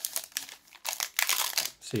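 Foil wrapper of a Pokémon Battle Styles booster pack crinkling in the hands as it is torn open, a run of crackles that is loudest in the second half.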